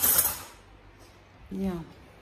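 A short, loud hissing rustle lasting about half a second at the start, followed by a brief spoken word.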